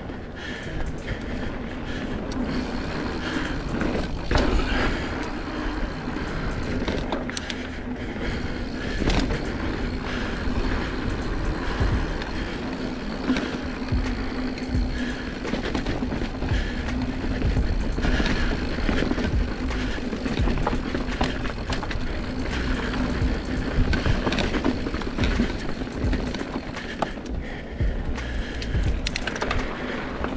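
Mountain bike rolling down a dirt singletrack, heard from a rider-mounted camera: steady tyre rumble and wind on the microphone, with frequent small clicks and knocks from the bike rattling over bumps.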